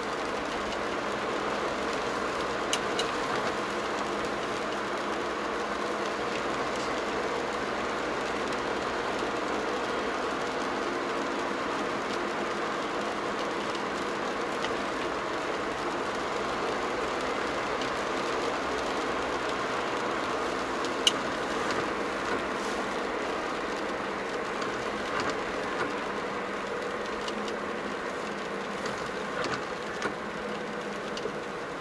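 A car driving at steady speed, heard from inside the cabin: an even mix of engine and tyre noise. A few brief sharp clicks sound over it, the sharpest about two-thirds of the way through.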